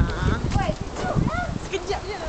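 Several short voices shouting and calling out, with wind buffeting the microphone underneath.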